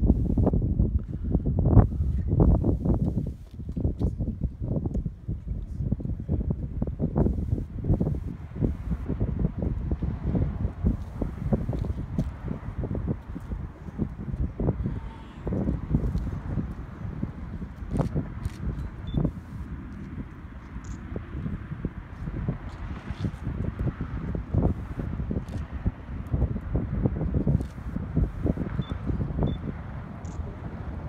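Wind buffeting the microphone: a low, gusty rumble, heaviest in the first three seconds, with a few faint clicks.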